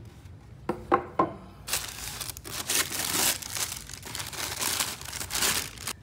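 A few light knocks as the lid comes off a cardboard gift box, then tissue paper and packaging crinkling and rustling for several seconds as the items inside are pulled out.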